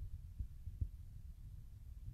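Low rumble and a few dull thumps in the first second, the handling noise of a handheld phone's microphone being moved.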